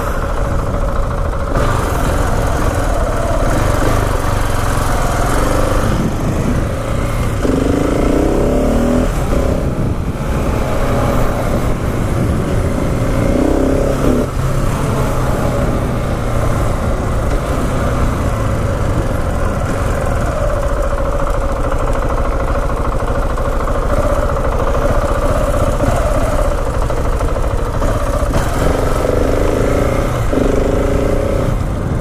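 KTM 690 Enduro R's single-cylinder engine being ridden on the road, its note rising and falling with the throttle and gear changes, with wind rushing over the microphone.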